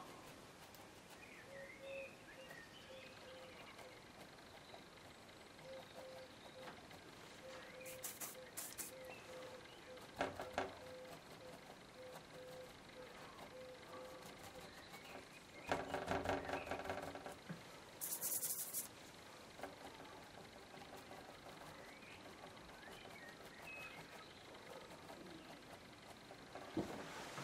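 Quiet room with a few short scratchy bursts of a stiff bristle brush scrubbing oil paint onto an MDF board; the longest lasts about two seconds, a little past the middle.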